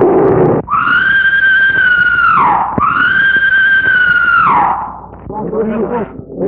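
A loud rough noise stops abruptly about half a second in. Then comes a high-pitched scream, held steady for about two seconds and falling away at its end, heard twice in a row.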